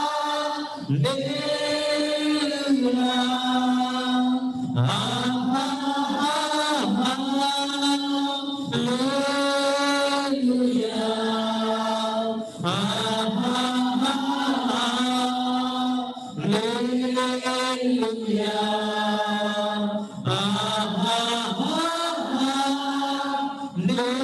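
Worship singers at microphones singing a short chorus line over and over, chant-like, one phrase about every four seconds with a brief breath between phrases.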